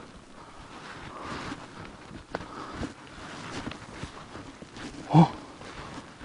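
Footsteps on a dry dirt path strewn with leaves, with a person's breathing while walking; a short startled 'uh?' about five seconds in is the loudest moment.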